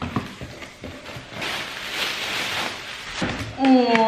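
Packing paper and bubble wrap rustling as they are pulled out of a cardboard box, after a couple of knocks at the start.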